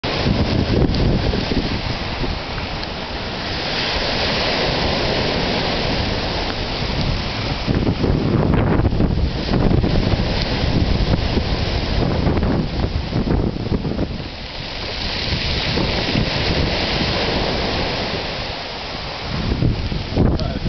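Heavy surf breaking and washing up a beach, the rush swelling and easing with each wave, over wind buffeting the microphone.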